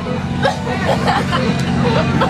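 Teenagers laughing and chattering inside a school bus, over the bus engine's steady low drone.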